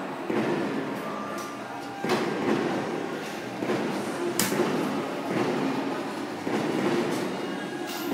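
Fireworks bursting outside, heard from indoors through a large glass window as a rolling rumble with repeated booms every second or two, and one sharper crack about halfway through.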